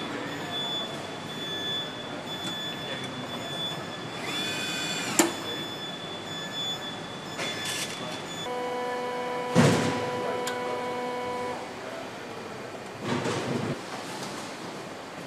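Car assembly plant noise: a steady mechanical din with a thin high tone, later a lower humming drone, from the line machinery. Over it come a short rising whine ending in a sharp clack about five seconds in, a loud knock near ten seconds in, and a brief burst of rattling near the end, sounds of tools and parts being worked on the line.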